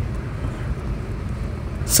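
Steady road and running noise inside the cabin of a Mitsubishi Outlander driving at about 37 km/h.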